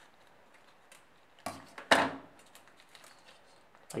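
Scissors cutting open a small plastic parts bag: two short snips about a second and a half and two seconds in, the second louder, with faint rustling of the plastic.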